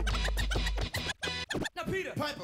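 A DJ scratching a vinyl record on a turntable over a hip-hop track. The deep bass stops a little before halfway, leaving choppy scratches cut in and out in short bursts.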